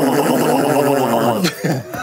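Mouth noises made into cupped hands: one long, buzzing, raspy drone that rises and falls slightly in pitch and stops about a second and a half in, followed by short squeaky sounds near the end.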